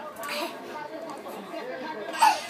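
Low voices and chatter with no loud event, a short soft vocal sound just after the start.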